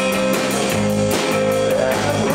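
Live rock band playing an instrumental passage: guitar over bass and drums, with one high note held for most of the two seconds while the bass line moves underneath.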